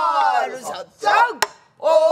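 Pansori singing: voices slide down in a long falling glide, then bend through a short phrase. A single sharp stroke on the buk barrel drum comes about one and a half seconds in, followed by a brief pause before the singing picks up again near the end.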